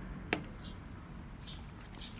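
A single sharp click of multimeter test probes being handled on a lithium-ion cell, followed by a couple of faint, short, high chirps.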